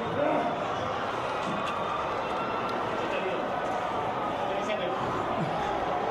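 A scuffle: a steady hubbub of voices and shouting with scattered thuds of bodies hitting the floor and furniture.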